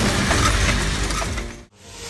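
Cartridge-loading machine running with rapid, dense mechanical clicking. The sound cuts off abruptly near the end.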